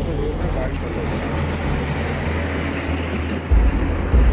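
Murmur of a gathered crowd's voices over steady outdoor rumble, with a louder low rumble near the end.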